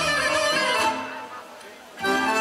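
Live Bulgarian folk ensemble playing traditional dance music, which breaks off a little over a second in and starts again at the very end.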